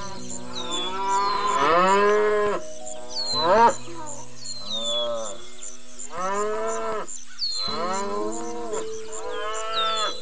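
A large animal lowing: about six moo-like calls, each rising and then falling in pitch, the longest and loudest about two seconds in. Steady background music with a fast high ticking plays underneath.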